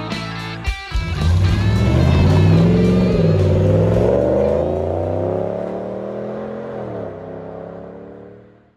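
A pickup truck engine revving hard. The pitch climbs, dips briefly about three seconds in, climbs again, then drops near the end as the sound fades. It follows rock music with drum hits that stops about a second in.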